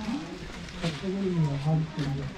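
Indistinct voices of people talking, with one low voice drawn out in a long sound over the second half.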